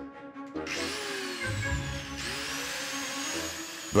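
Electric angle grinder running against a statue's old cement repair. Its whine falls, then climbs again about halfway through.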